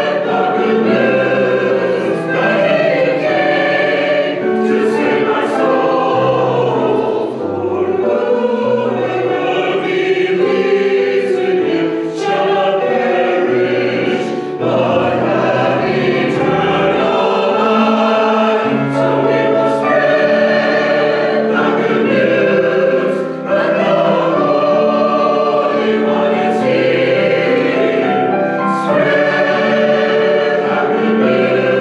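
A mixed chancel choir of men and women singing a church anthem in harmony, steady and full throughout.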